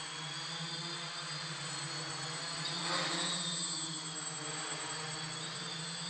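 Small quadcopter's electric motors and propellers buzzing steadily in flight, with a slight waver in pitch as it makes abrupt changes of direction, a little louder around the middle.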